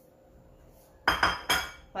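Two sharp clinks of kitchen dishware about half a second apart, a little past a second in, each ringing briefly, as a serving bowl and spatula are knocked and set down after the chicken goes into the rice cooker.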